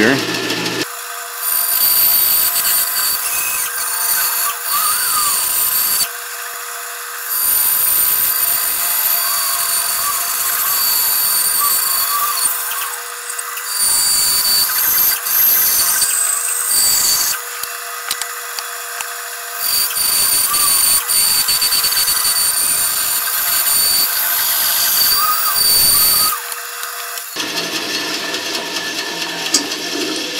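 Band saw with a 1/4-inch, 6 TPI blade cutting curves through a 2x4, over a steady high whine. The cut comes in four stretches of a few seconds each, with short quieter pauses where the feed eases. It goes quieter a few seconds before the end as the cut finishes.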